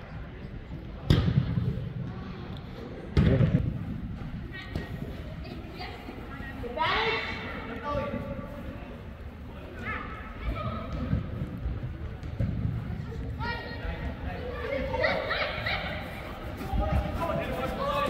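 A soccer ball being kicked on an indoor turf pitch, two thuds in the first few seconds, followed by players and spectators calling out, echoing in a large hall.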